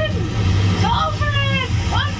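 A woman's voice from the travel clip speaks over a steady low rumble.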